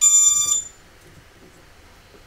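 Brushless motors of an FPV quadcopter sounding an electronic beep through their Hobbywing ESCs, part of the startup tones when the LiPo battery is connected; a single high beep that cuts off about half a second in.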